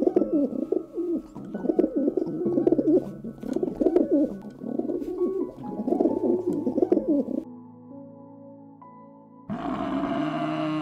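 Rock pigeons cooing over and over, with soft background music underneath. The cooing stops about seven seconds in, leaving only the music, and a loud, low animal call begins just before the end.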